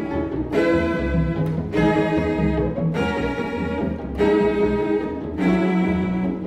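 Two solo cellos with a chamber string orchestra playing a concerto: long bowed notes, a new one sounding about every second and a quarter.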